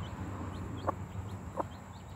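A broody hen giving a few short, low clucks, the food call a mother hen uses to show her day-old chicks what to eat as she pecks at scattered rice. Faint high peeps come from the chicks.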